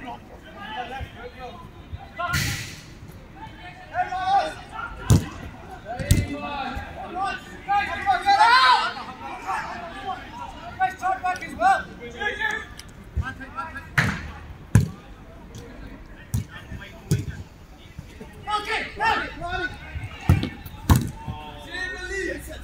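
Football being kicked and knocked around in a 5-a-side game: about ten sharp knocks of the ball off boots and the perimeter boards, in clusters, among players' shouts and calls.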